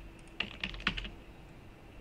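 Computer keyboard keystrokes: a quick run of about five key clicks within half a second, typing a search word, then quiet typing stops.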